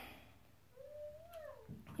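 A cat meowing once, faintly: a single call about a second long that rises slightly and then falls in pitch.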